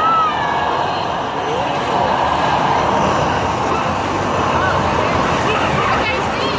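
Busy arcade din: a racing arcade game's engine and effect sounds over a steady hubbub of voices, with a short gliding tone right at the start.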